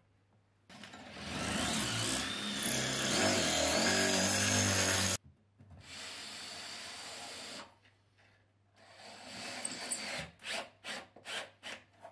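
Cordless drill working into a timber batten fixed against a stone wall: it runs under load for about four seconds with a wavering pitch and cuts off suddenly, runs again briefly and more steadily, then gives a string of short bursts near the end.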